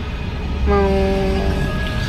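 A voice holds a long, flat "mau…" on one steady pitch for about a second, over the low steady rumble of the car's cabin.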